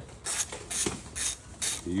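Hand socket ratchet wrench clicking in quick back-and-forth strokes, about two to three a second, as it backs out a bolt.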